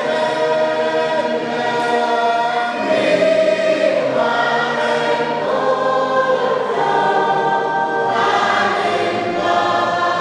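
A choir singing a hymn in sustained chords, the voices moving to a new chord every second or two.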